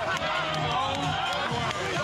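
Basketball arena crowd noise with excited shouting and cheering close by, over music.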